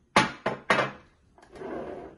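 Three sharp knocks of kitchenware handled on a countertop in quick succession, then a short, softer rustle near the end.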